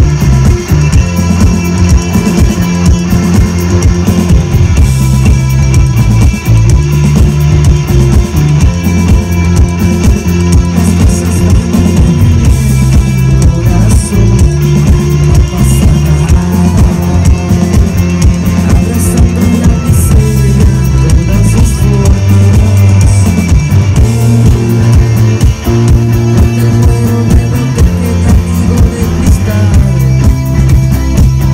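A rock band playing live at full volume, with electric guitars over bass and a drum kit, the drums keeping a steady beat throughout.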